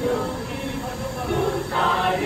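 Mixed choir singing, with held notes over a low rumble; a louder phrase comes in near the end.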